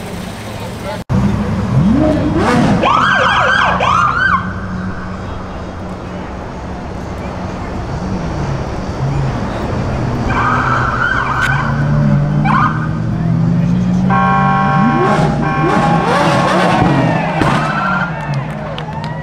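Police car siren sounding in short bursts of rising-and-falling yelps, two seconds in, around ten seconds in and again near the end, over the steady low rumble of car engines. A stuttering steady tone, like a horn, sounds about fourteen seconds in.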